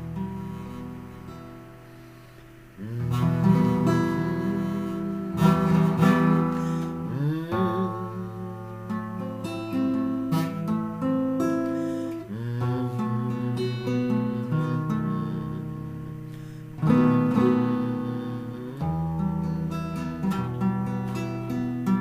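Instrumental acoustic guitar introduction to a song: chords struck every few seconds and left to ring.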